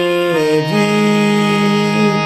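Electronic keyboard set to a harmonium-like reed voice, playing a slow melody of sustained notes over a held lower note. The melody steps to new notes about half a second in.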